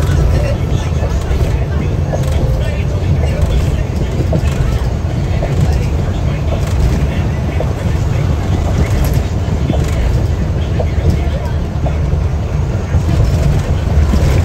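Steady low engine and road rumble heard inside a bus cabin at highway speed, with indistinct voices of passengers talking.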